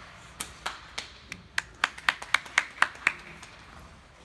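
Hand claps close by: about a dozen sharp claps that come quicker and louder, then stop about three seconds in.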